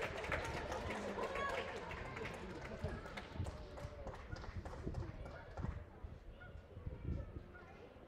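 Indistinct voices chattering, with scattered light taps and knocks, growing quieter over the seconds.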